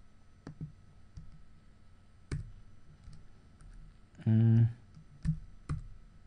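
A few scattered single clicks from a computer keyboard and mouse as a logic formula is typed into a dialog box, with a brief low hum from a man's voice about four seconds in.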